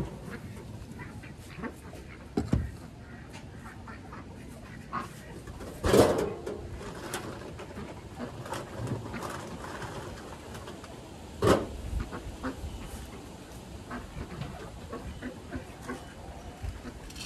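Domestic ducks quacking now and then, over light knocks and clatter from handling wire-mesh rabbit hutches and feeders.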